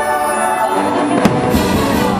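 Fireworks bursting over orchestral music, with one sharp bang a little past the middle followed by a hiss.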